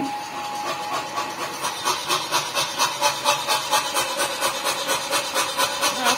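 Self-contained pneumatic power hammer running: a steady whine fades over the first second or two while its air cylinders build to an even, hissing chuff of about four beats a second.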